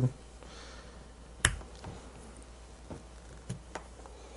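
Small metal clicks as the parts of an XLR connector are fitted together by hand: one sharp click about a second and a half in, then a few fainter ticks.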